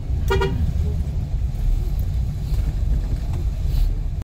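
Jeep engine running with a steady low rumble, heard from inside the cabin, with one brief horn toot near the start.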